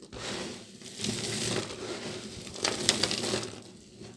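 Hands crushing and crumbling a pile of dry soap chunks: a continuous crunchy crackling, with a few sharper cracks about three seconds in, dying away near the end.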